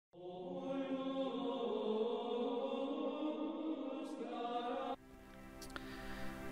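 Intro music of chanted singing on long held notes. It cuts off suddenly about five seconds in, and quieter steady music carries on after it.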